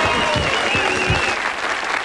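Studio audience applauding and cheering, with a few voices rising above the clapping, fading a little near the end.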